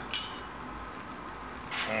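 A single sharp, ringing clink of steel tweezers and soft glass knocking together just after the start, followed by a faint steady background hiss.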